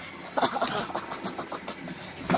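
A dog play-growling, a rough rattling rumble that starts about a third of a second in and keeps going.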